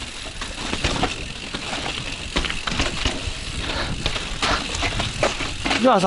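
Full-suspension mountain bike, a Yeti SB140, riding down a rocky trail: tyres rolling over dirt and rock under a steady rush of noise, with frequent knocks and rattles as the bike hits the chunk.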